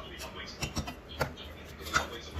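A metal ladle clinking and scraping against a metal pan as a curry is stirred: a few sharp clinks, the loudest near the end.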